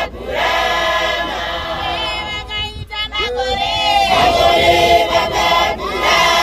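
A Johane Masowe church congregation singing together as a choir, mostly women's voices, with a brief break in the singing about three seconds in.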